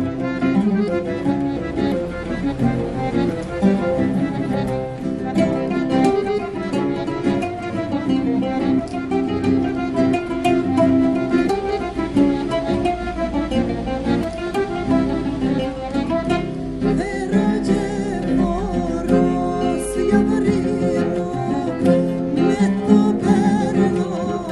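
A small acoustic ensemble of accordion, classical guitar and oud playing a rebetiko-style song at a lilting pace. A woman's voice comes in singing near the end.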